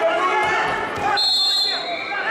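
Referee's whistle blown once about a second in, a high-pitched blast of about half a second that stops the wrestling bout, over shouting voices and dull thuds on the mat.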